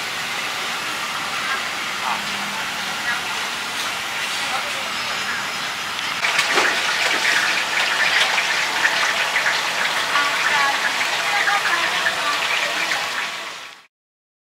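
Street food stall ambience: a steady hiss of background noise with indistinct voices, getting louder and busier about six seconds in, then fading out near the end.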